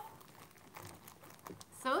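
Faint rustling with small scattered clicks of something being handled. A woman's voice starts near the end.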